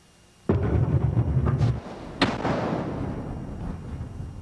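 A sudden deep boom from a film soundtrack, with a heavy low rumble that lasts about a second. It is followed by a sharp crashing hit that rings out and slowly fades.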